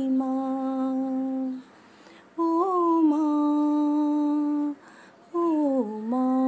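A woman's voice humming the bhajan melody in three long held notes with short breaks between them, the second rising into its note and the last sliding down before settling.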